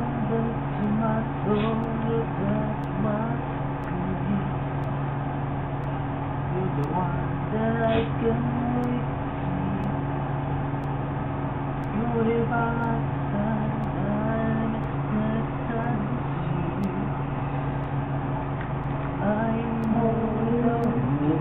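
A man humming a slow melody in short held notes, the same phrase coming round again about midway through, over a steady low hum.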